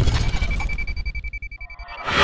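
Logo sting sound effect: a deep rumble fading away under a high, steady ringing ping that starts just after the opening and holds for well over a second.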